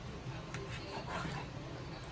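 Faint sounds of a knife slicing through a smoked bacon-wrapped pork tenderloin and onto a plastic cutting board.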